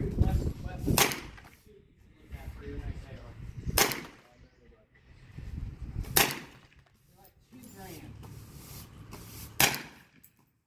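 Four single shots from a Winchester Model 1903 semi-automatic rifle in .22 Winchester Automatic, fired one at a time about two and a half seconds apart, each a short sharp crack.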